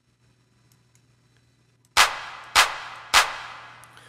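A sampled drum-machine clap played three times, about 0.6 s apart, starting about halfway in. Each hit trails off in a long reverb tail from a reverb plugin inserted directly on the clap's own mixer channel.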